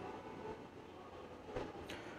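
Low room tone: the faint steady background noise of a voice-over recording, with a brief faint noise near the end.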